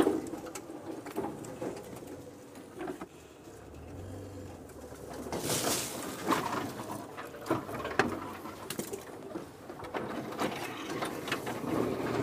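Game-drive vehicle pushing slowly through thick bush, with branches cracking and scraping against it in a string of short snaps and one longer scrape about halfway through. A dove coos in the background.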